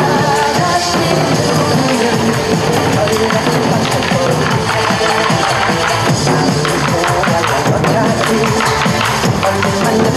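Korean buk barrel drums struck with sticks in a steady rhythm by a small ensemble, over loud trot music.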